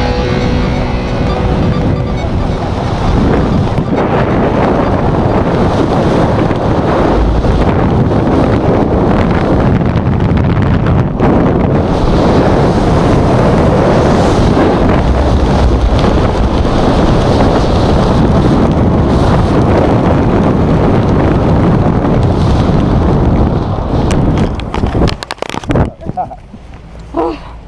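Wind buffeting a wrist-mounted camera's microphone during a tandem parachute descent and landing: a loud, steady rush that drops away suddenly near the end as the pair touch down, with a few knocks just before.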